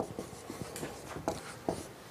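Writing on a board: a run of short, scratchy strokes at uneven intervals.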